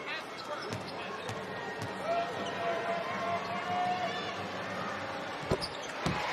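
A basketball bounced a few times on the hardwood court, the loudest bounce near the end: a free-throw shooter's dribbles before the shot. Underneath is the murmur of an arena crowd and voices.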